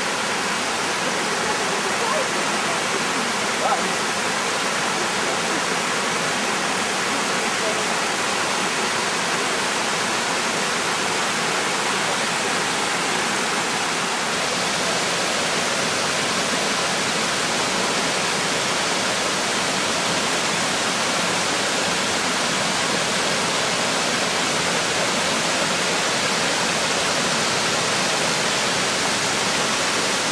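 Waterfall cascading over rock tiers into pools: a steady, even rush of falling water.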